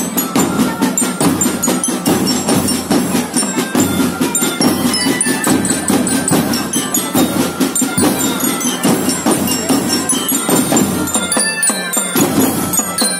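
Children's marching drum band playing: fast, dense drumming with a high bell-like melody over it.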